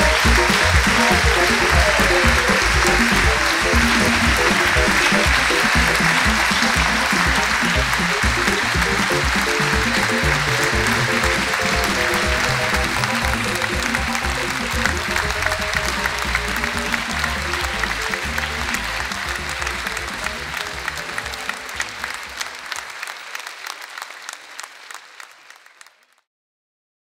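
Theatre audience applauding, with music playing underneath; the applause and music fade out gradually over the last ten seconds or so.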